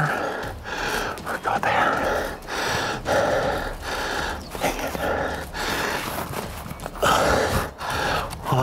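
A man's breathy exhalations in a quick string of huffs, about one or two a second, with little voice in them.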